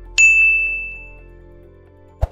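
A notification-bell 'ding' sound effect for a clicked subscribe bell: one bright, high chime struck once and ringing out over about a second.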